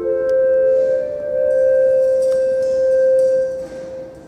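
Church organ holding soft, steady sustained notes in a slow chord, with a second note joining about a second in; the sound fades away near the end.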